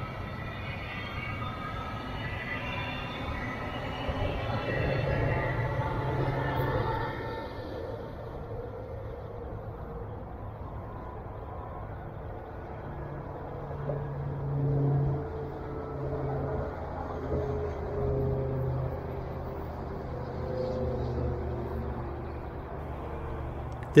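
Brightline passenger train pulled by a Siemens Charger diesel-electric locomotive, accelerating from a standstill. For the first eight seconds a faint, slightly rising whine of several tones sits over the low engine hum. The engine hum then swells and eases several times.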